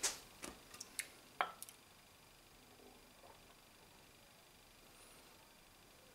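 A few short, light clicks and knocks in the first second and a half, then near silence: room tone.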